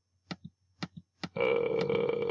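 A few short clicks of a computer mouse's scroll wheel in the first second, then, about one and a half seconds in, a steady held tone that does not change in pitch.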